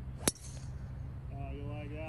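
Golf driver striking a ball off the tee: a single sharp, high click about a quarter second in.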